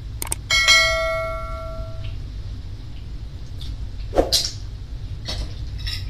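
A bell-like ding sound effect, struck once just after a quick click, rings on one clear tone and fades over about a second and a half. It is the chime of a subscribe-button animation.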